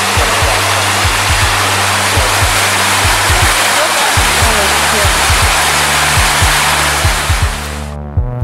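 Waterfall: water rushing loudly and steadily over rock, fading out near the end, over background music with steady bass notes and a regular low beat.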